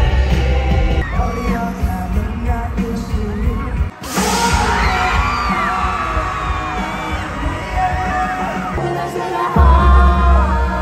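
Live pop concert music with heavy bass, recorded from among the audience. A cut about four seconds in brings a different song with the crowd cheering and singing along. Another change near the end brings the heavy bass back.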